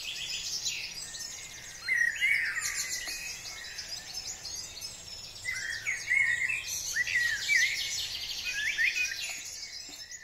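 Several birds singing and calling at once: a dense chorus of high chirps and trills, with louder song phrases about two seconds in and again around the middle.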